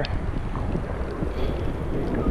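Steady wind noise buffeting the microphone, mixed with water sloshing close by around a person standing chest-deep in the sea.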